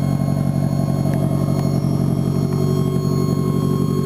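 1988 Toyota Celica All-Trac (ST165) exhaust at the tailpipe, its turbocharged 2.0-litre 3S-GTE four-cylinder idling steadily and evenly.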